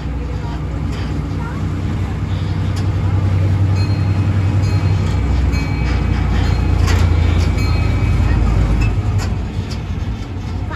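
Steady low rumble of a small park ride train moving along, heard from its open passenger car, getting louder in the middle, with a faint thin whine for a few seconds.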